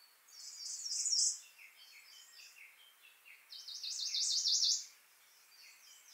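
Songbird singing: two loud phrases of rapid, high trilled notes, about a second in and again around four seconds, with softer chirps between them.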